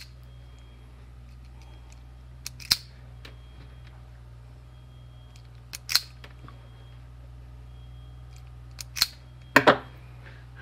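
Hand-operated wire strippers snapping shut as they strip insulation off the ends of black antenna radial wires: a few sharp clicks about three seconds apart, with a quick pair near the end.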